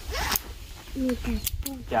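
Nylon webbing of an orange ratchet tie-down strap pulled quickly through its ratchet buckle, giving a short zip-like rasp, with two sharp clicks from the buckle about one and a half seconds in.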